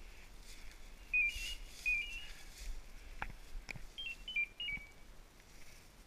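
Electronic beeper on a hunting dog's collar sounding three short runs of high warbling beeps, each stepping between two or three fixed pitches. The third run, near the end, is the longest.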